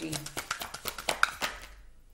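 A deck of cards being shuffled by hand: a quick run of light card clicks and flutters that thins out and fades near the end.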